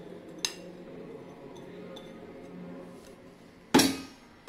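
Quiet kitchen handling: a faint click about half a second in, then one sharp, ringing clink of a dish or utensil near the end, the loudest sound.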